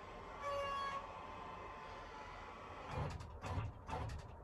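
Electric power lift bed (LCI Toscana) run from its wall switch: a short whine about half a second in, then faint motor hum and a few soft knocks near the end as the platform rises.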